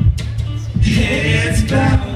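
Live band performing: a male voice singing into a microphone over keyboards and a steady low bass, the voice coming in strongly about a second in.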